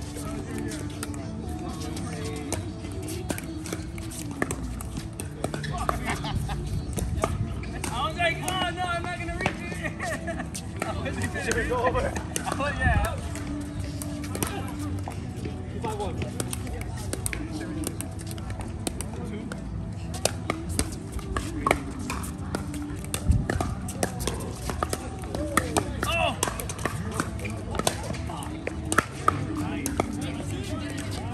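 Pickleball paddles striking the ball in sharp, irregular pops, over steady background music and indistinct voices.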